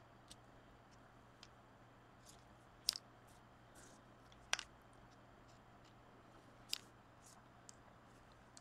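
Near silence broken by a few faint, isolated clicks and taps, about three clear ones, from a paint marker being dabbed on and lifted from a pumpkin's surface.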